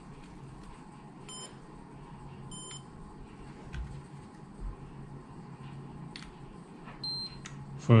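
DPM 816 coating thickness gauge beeping as it takes readings: two short beeps just over a second apart, then a single higher beep near the end, with a few light handling clicks.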